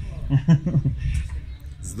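Speech only: a few soft words from a man's voice, a short pause, then a reply beginning at the end.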